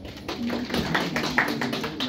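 A few people clapping: scattered, irregular hand claps starting shortly after the start.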